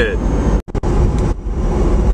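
Road and wind noise inside the cabin of a moving electric-converted Porsche 914: a steady low rumble with no engine note. It drops out for an instant just over half a second in.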